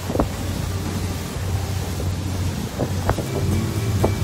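Wind buffeting the microphone aboard a motor yacht under way, over the steady low drone of its Volvo D12 diesel engines, with a few brief knocks.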